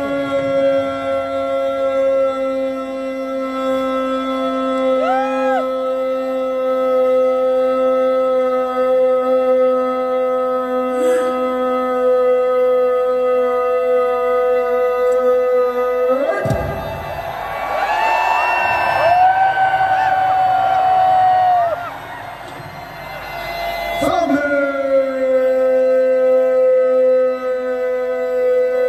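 A soldier's long drawn-out parade command shout during the Beating Retreat ceremony, carried over loudspeakers and held on one steady pitch for about sixteen seconds. A mix of crowd voices and sliding calls follows. About three seconds before the end a new long held shout begins.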